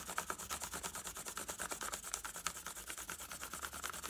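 Side of a pencil rubbed quickly back and forth over thin paper laid on a textured surface, making a texture rubbing: quick, even strokes, several a second.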